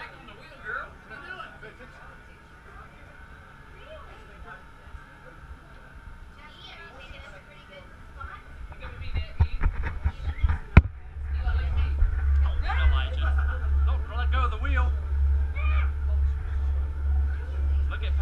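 People talking and laughing aboard a catamaran. A sharp knock comes about eleven seconds in, and a loud steady low rumble with a regular pulse sets in under the voices from then on.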